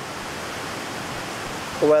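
Steady rushing of creek water, an even, unbroken hiss.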